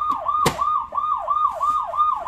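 Electronic siren of a children's ride-on police motorcycle toy sounding from its built-in speaker: a fast, repeating falling wail, about three sweeps a second. A single sharp click comes about half a second in as the toy's rear plastic storage box is unlatched.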